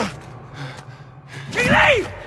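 A man's short, strained cry of effort about one and a half seconds in, its pitch rising and then falling, with the tail of another brief cry right at the start.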